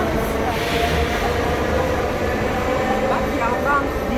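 Marmaray electric commuter train moving alongside the platform as it pulls out: a steady low rumble with a steady hum over it.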